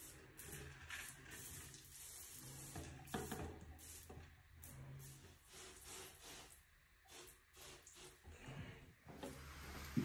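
Hand pump pressure sprayer misting a slightly acidic cleaner onto a tile shower floor, in short, faint hissing bursts.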